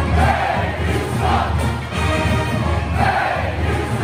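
Pep band playing, with held brass notes over a steady low beat, while the crowd shouts along every second or two.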